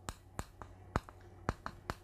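Chalk clicking against a blackboard as words are written, about six sharp ticks at uneven intervals.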